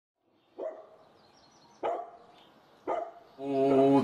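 A dog barking three times, about a second apart, each bark short and fading out. Near the end a man's voice begins a low, steady Pali chant.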